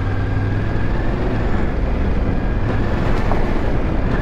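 Yamaha Ténéré 700's 689 cc parallel-twin engine running steadily in third gear on a dirt trail, under a steady rush of wind and tyre noise.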